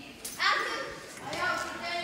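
Speech only: a child's voice talking.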